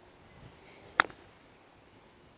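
A golf club striking the ball on a short chip shot: one sharp click about a second in, over quiet outdoor background.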